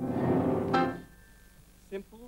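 A man's voice holding one long note, growing louder before it breaks off about a second in.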